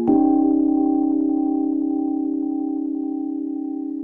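Slow, calm instrumental relaxation music: a single soft sustained tone, struck just after the start, rings on and fades slowly with a gentle, even wobble in loudness.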